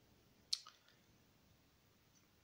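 Near silence, broken by one short sharp click about half a second in and a couple of fainter ticks right after it.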